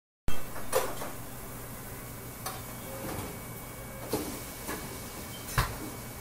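Steady hum of commercial kitchen equipment, with scattered knocks and clatters of utensils and dishes on a stainless steel counter. There are about six in all, and the sharpest comes near the end.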